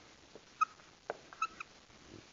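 Dry-erase marker squeaking on a whiteboard while writing, a few short high squeaks with a faint tap between them.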